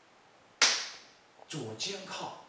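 One sharp crack about half a second in, fading quickly: the snap of a tai chi fajin power-release strike, the sudden explosive movement cracking the loose silk uniform.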